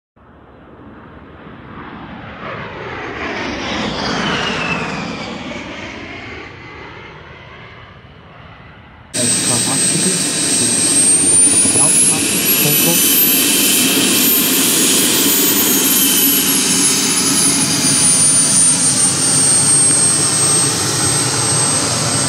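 A swelling jet whoosh that peaks about four seconds in and falls away in pitch. At about nine seconds it cuts abruptly to a model jet's kerosene turbine running loudly with a high whine, which climbs in pitch and settles back down as the throttle is worked.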